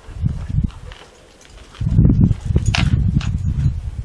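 Wind buffeting the microphone of a handheld voice recorder: loud, low rumbling gusts that ease off for about a second, then come back stronger.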